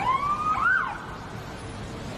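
Ambulance siren sounding in quick rising and falling sweeps, stopping about a second in, with road traffic noise continuing underneath.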